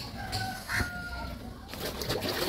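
A chicken calling faintly: a short call, then a drawn-out one of about a second at a steady pitch, with a light knock about three-quarters of a second in.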